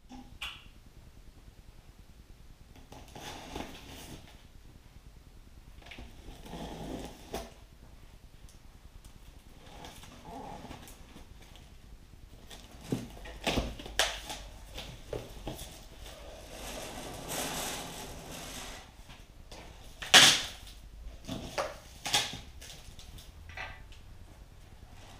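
Cardboard shipping carton being opened by hand: irregular rustling and scraping of cardboard and packing tape, with scattered sharp knocks and rips as the top flaps are worked loose and folded back. The loudest is a sharp rip or knock about twenty seconds in.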